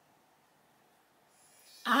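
Near silence, then about one and a half seconds in the faint high buzz of a battery-powered sonic T-bar facial massager switching on. A woman's voice starts just before the end.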